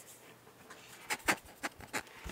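A few short, light clicks and taps in the second half as a palm router's aluminium body is turned over and handled in the hands.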